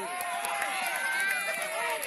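Several people shouting and calling out at once, their voices overlapping, with some drawn-out calls.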